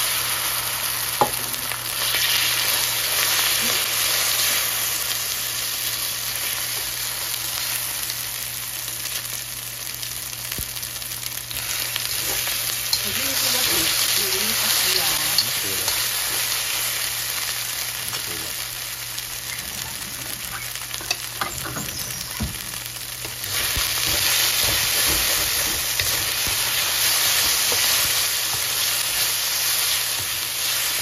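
Raw shrimp, marinated with egg white and starch, sizzling steadily in hot oil in a metal wok as they are stir-fried, with a few light clicks of the utensils against the wok. The sizzle steps up in loudness near the end.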